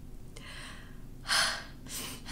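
A woman's breathing: a soft breath about half a second in, then one short, sharp intake of breath, a gasp, about a second and a quarter in, the sound of someone upset and on the verge of tears.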